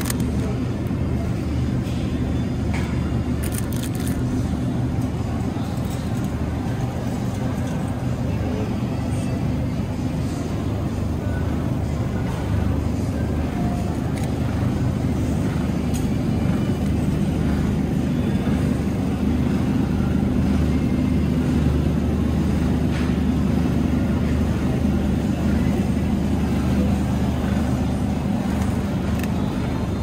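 Steady low hum of supermarket refrigerated display cases and store ambience, with a few light clicks of packages being handled.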